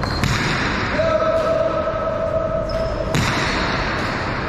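Jai alai pelota striking the hard walls and floor of a large indoor fronton: sharp cracks a second or two apart, each trailing off in echo. A steady single-pitched tone holds for about two seconds in the middle.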